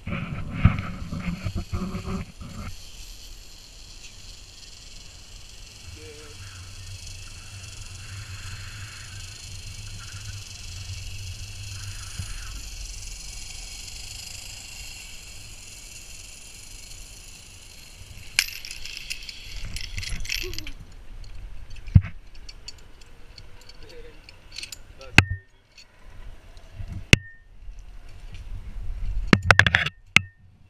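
Zip-line trolley pulleys running along a steel cable: a steady high hiss over a low wind rumble on the microphone, which stops suddenly about twenty seconds in as the rider reaches the platform. After that come sharp metallic clicks and clinks of carabiners and harness hardware being handled.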